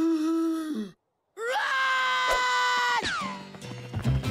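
Two long cartoon screams: the first, held on one pitch, drops off about a second in; after a brief silence, a second, higher scream swoops up, holds, and falls away about three seconds in.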